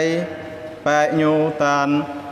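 A man's voice chanting in short phrases, each held on a level pitch, as in intoned religious recitation. One phrase ends about a quarter second in, and after a short pause two more follow.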